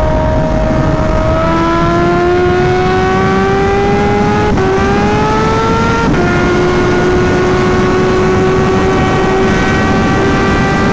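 Kawasaki Ninja H2's supercharged inline-four engine pulling under throttle, its note climbing steadily. The pitch drops at two upshifts, about halfway through and again a second and a half later, then holds a steady cruise. Wind rushes over the microphone underneath.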